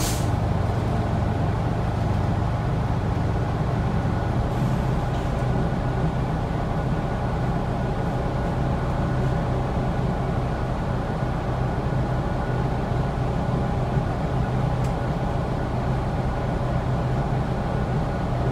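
Steady drone of a New Flyer Xcelsior XD40 diesel city bus heard from inside the passenger cabin: a low engine hum with road noise, little change throughout. There is a short click right at the start.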